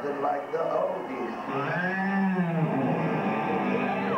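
Voices and music from a theater show's sound system, with one long drawn-out vocal note that rises and falls in pitch in the middle.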